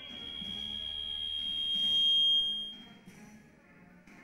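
Military band music, with a loud, high steady tone over it that swells for about two and a half seconds and then cuts off.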